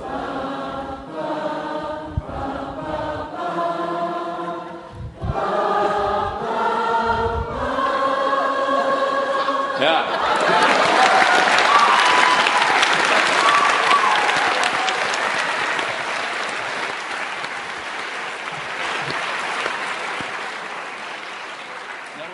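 An audience singing the notes of a pentatonic scale together, each note held about a second before the pitch changes, with low thumps between notes. About ten seconds in it breaks into loud applause and cheering that slowly dies down.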